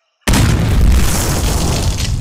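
Explosion sound effect: a sudden loud boom about a quarter second in, followed by a deep rumble that slowly dies away.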